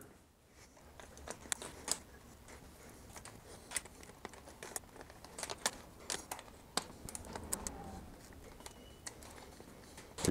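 Faint, irregular clicks and light metal rattles of a bicycle saddle's rails being worked by hand into a Thudbuster suspension seatpost clamp.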